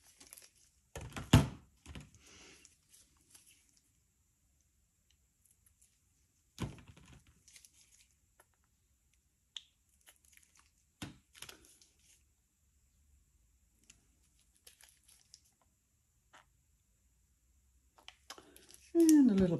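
Plastic squeeze bottles of acrylic pouring paint being handled, squeezed and set down: a few sharp knocks, the loudest about a second in, with softer clicks and crinkles between.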